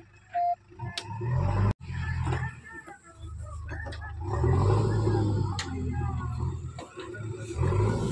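JCB backhoe loader's diesel engine running, its low hum rising under load about a second and a half in and again from about halfway through.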